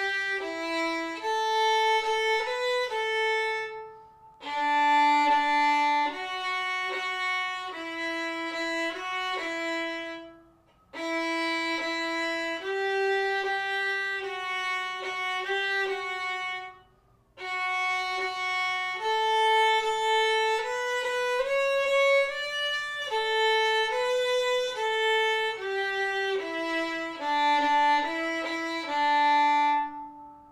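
A violin bowed in a simple beginner melody of separate, evenly paced notes. The notes fall into phrases with short breaks about four, eleven and seventeen seconds in.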